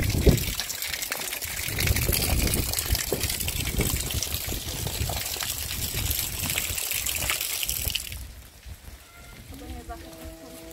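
Steady hiss of rain or sleet with wind buffeting the microphone in uneven low rumbles; the hiss cuts off suddenly about eight seconds in.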